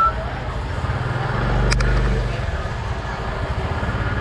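Motorbike engine running close by, swelling briefly about halfway through, amid market voices. There is a sharp clack at around the same point.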